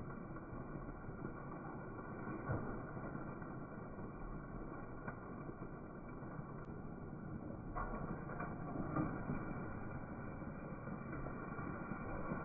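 Mustard greens being added by hand to a steel wok of braised meat and turned with a metal spatula: a few light knocks and scrapes of the spatula against the wok, clustered about eight to nine seconds in, over a steady low noise.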